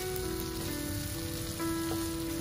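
Shrimp and green onions sizzling in a frying pan, a steady crackle like rain, with background music playing long held notes over it.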